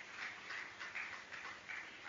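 Scattered clapping from a small audience, about three claps a second, faint and fading out just after the end.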